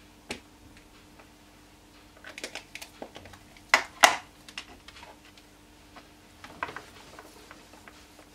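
Hard plastic ink pad cases being handled and set down on a desk: a series of clicks and clatters, with two sharp knocks about four seconds in as a pad is put down. A few lighter clicks and a soft scrape follow.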